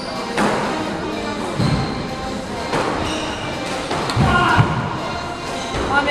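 Squash ball knocked back and forth in a rally, racket hits and wall strikes giving a sharp knock about every second and a quarter, four in all, with music playing in the background.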